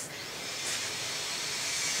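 A steady hiss with no tone in it, growing slowly louder across the two seconds.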